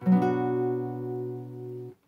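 A B minor barre chord strummed once on an acoustic guitar, the seventh chord of the C major sequence. It rings steadily for nearly two seconds and cuts off suddenly near the end.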